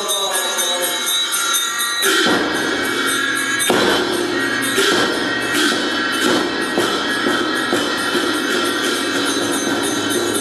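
Tibetan Buddhist ritual music: chanting with a ringing handbell, then, about two seconds in, loud percussion on the large temple drum with cymbals joins in, its strokes coming faster and faster.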